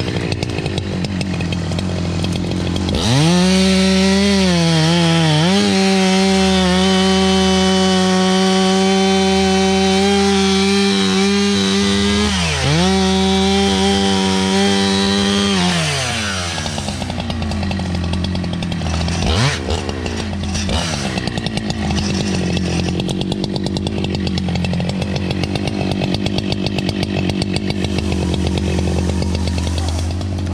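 Husqvarna two-stroke chainsaw revved to full throttle and cutting through a felled log for about thirteen seconds, its pitch dipping briefly once near the end of the cut. It then drops back to idle, is blipped once, and keeps idling.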